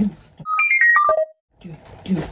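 A short musical sound effect for a 'Five Minutes Later' title-card transition: a quick run of single notes that jumps up and then steps down in pitch, lasting under a second, then cuts off into a moment of dead silence.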